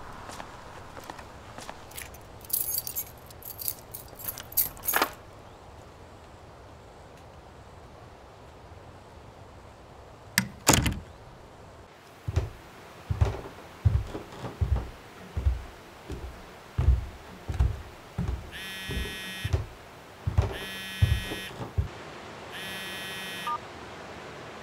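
A sequence of added sound effects: keys jangling for a couple of seconds near the start, a door knocking shut about ten seconds in, a run of footsteps on a wooden floor, then a mobile phone ringing three times near the end, over a faint room tone.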